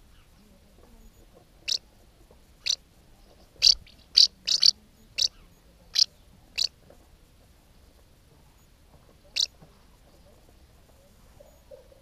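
House martins calling at the mud nest: about ten short, sharp, high chirps. Four come in quick succession around the middle, and the last is a lone one near the end.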